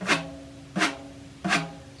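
Hand-held frame drum tapped three times in a steady beat, about 0.7 s apart, each stroke leaving a short low ring.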